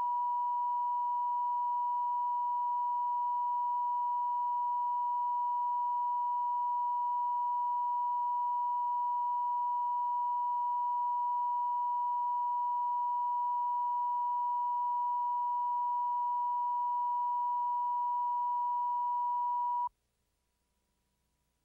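Steady 1 kHz line-up tone: the reference test tone laid down with colour bars at the head of a videotape. It is one unwavering pitch that switches on and off abruptly.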